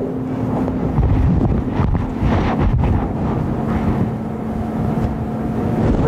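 Steady low rumble and a low electrical hum picked up by the classroom microphone, with faint, indistinct answers from class members speaking off-microphone.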